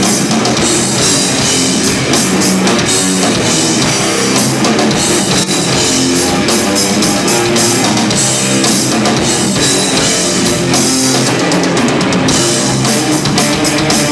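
Stoner rock band playing live, loud and steady: electric guitars, bass guitar and drum kit.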